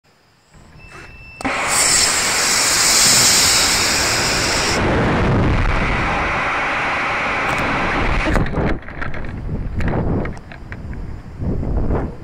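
Solid-fuel model rocket motor lighting about a second and a half in and burning with a loud hissing rush for about three seconds before cutting off sharply. Heavy, gusting wind rumble on the microphone follows as the rocket coasts and falls.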